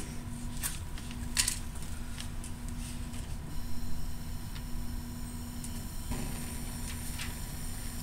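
Bench gas tap opened to a Bunsen burner, with gas starting to hiss steadily about three and a half seconds in. A few light clicks and knocks come before it.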